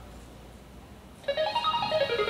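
Electronic game-show board-reveal sound cue. After about a second of quiet, a quick run of bright electronic notes climbs step by step in pitch as the answer board appears.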